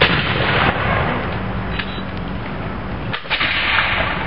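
Black-powder flintlock muskets and rifles fired by a line of Revolutionary War reenactors: a ragged string of loud shots, one right at the start, another under a second in and another a little after three seconds.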